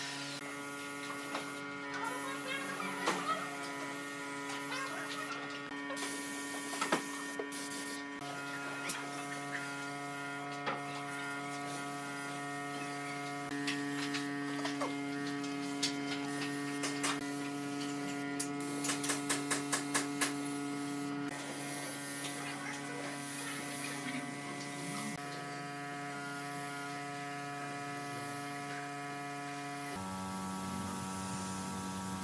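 Steady electric hum with many even overtones, likely from a motor running in the workshop. Scattered light clicks and knocks sound over it, with a quick run of about eight clicks roughly two-thirds of the way through.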